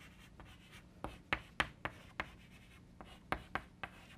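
Chalk writing on a blackboard: a run of short, sharp taps and scratches as letters are written, coming in a few quick clusters.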